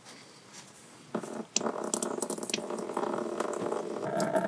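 Engine coolant starting to run from a 2001 Mitsubishi Montero's radiator drain plug about a second in, a thin stream splashing into a mixing tub below. The flow is weak because the radiator cap is still on.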